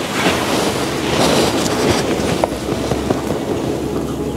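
Irregular rustling and rubbing of clothing and hat brims as people press together in a hug, with a few small clicks.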